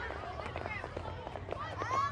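Background chatter of many children's voices overlapping, with no single clear speaker.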